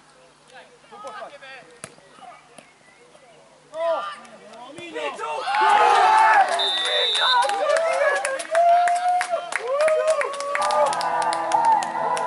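Scattered shouts from players on a football pitch, then a goal: players and spectators burst into shouting and cheering about five seconds in, with clapping.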